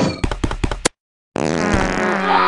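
Fart sound effect: a sputtering run of rapid pops lasting about a second. After a short gap, a loud hissing, noisy sound starts near the end and is still going when the clip ends.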